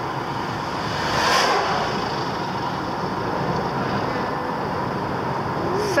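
Steady road and engine noise heard inside a moving car, with an oncoming lorry passing about a second in.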